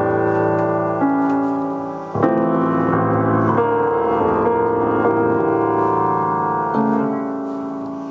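Solo piano improvisation: slow, sustained chords, a new one struck every second or two and left to ring and fade.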